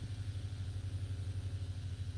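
A steady low hum with faint hiss, with no speech or sudden sounds in it.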